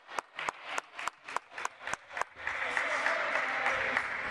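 Spectators clapping in a quick steady rhythm, about four or five claps a second, which gives way about halfway through to general applause and crowd noise.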